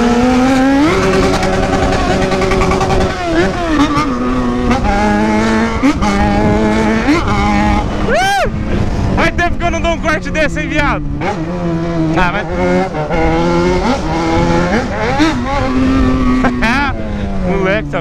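Yamaha XJ6 motorcycle's inline-four engine, loud, accelerating and shifting through the gears on the move, its pitch climbing and dropping again and again, with one sharp quick rev about eight seconds in.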